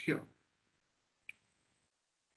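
A man's spoken word trails off at the start, then near silence broken by one short, faint click a little past the middle.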